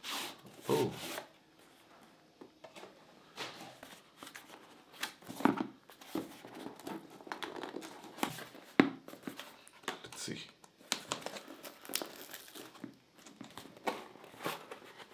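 Cardboard microphone packaging being handled: a white inner box slid out of its printed sleeve and turned over, with irregular papery rustles, scrapes and a few sharper taps of card against card.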